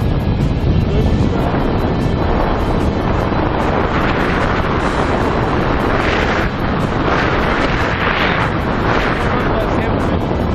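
Loud, steady wind rushing over an action camera's microphone during a parachute descent under canopy.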